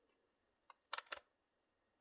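Three small clicks about a second in, a faint one then two sharp ones close together: channel switches being flipped on an RC transmitter. Otherwise near silence.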